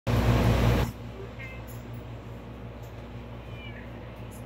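A loud rush of noise in the first second, then a domestic cat giving two short, faint, high meows over a steady low hum.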